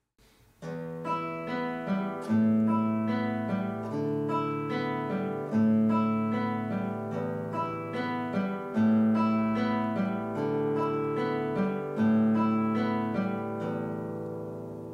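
Classical guitar played fingerstyle, starting after a brief silence about half a second in: a plucked arpeggio figure over a held bass note, the bass changing about every three seconds. It is a right-hand exercise in separate planting, the fingers set on the strings ahead of each stroke.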